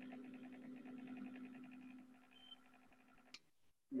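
Faint, steady electrical buzz: a low hum with a buzzy edge, as from an open microphone line on a call. It cuts off suddenly a little over three seconds in.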